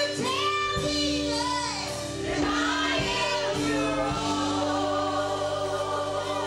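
Women's gospel group singing live, a female lead over backing vocalists, with instrumental accompaniment holding steady chords and a changing bass line.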